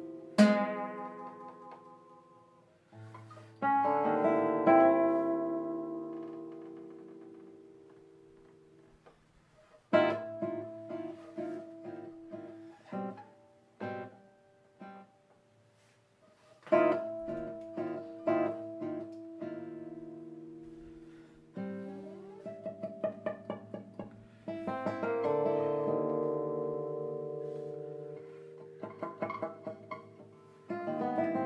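Solo nylon-string classical guitar playing a contemporary concert piece: a sharp, loud attack about half a second in, then chords and quick runs of plucked notes that are left to ring and die away into near silence twice before the playing picks up again.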